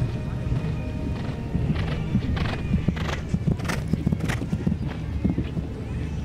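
Show-jumping horse cantering on grass, its hoofbeats and the horse's own sounds coming in a regular stride rhythm, plainest between about two and four and a half seconds in.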